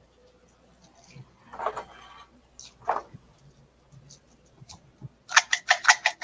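Handling noises as small items are packed into a plastic jar: a few faint rustles and taps, then a quick run of clicks and crinkles near the end.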